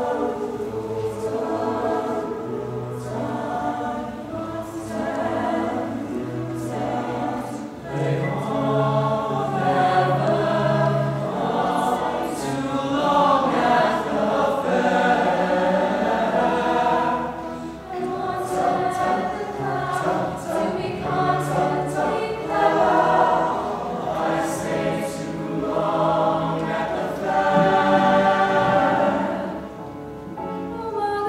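Mixed show choir of boys and girls singing together in harmony, with a low bass line under the upper voices.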